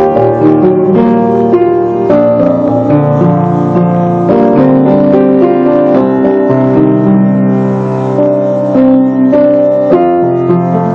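Solo piano played with both hands: a melody over held lower notes, at a steady, unhurried pace.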